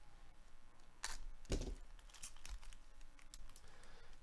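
Foil wrapper of a trading-card hobby pack being cut and torn open by gloved hands: crinkling and rustling with a run of sharp clicks, the loudest about a second in and again about half a second later.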